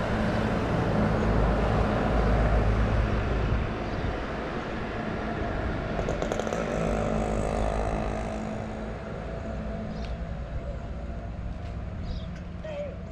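Wind rumbling on the camera microphone, strongest in the first four seconds, then steadier and a little lower.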